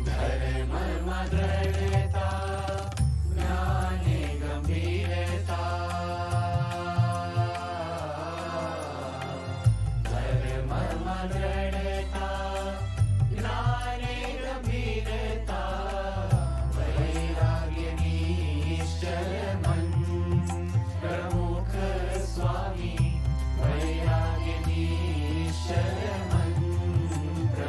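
Gujarati devotional song sung by male voices over a held, stepping bass line and light percussion.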